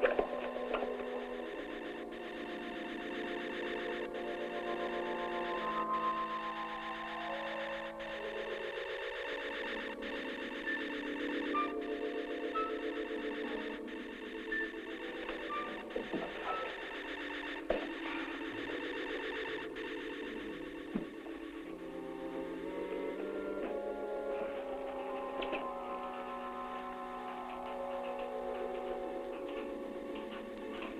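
Eerie electronic film-score music: sustained tones step downward in pitch over the first several seconds, then climb back up step by step toward the end. Short high beeps and a faint click about every two seconds run through it.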